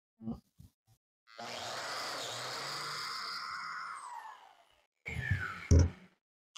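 Biscuit joiner (plate joiner) motor switching on, running for about three seconds during a test plunge cut into a scrap block, then winding down with a falling pitch. A brief clatter follows near the end.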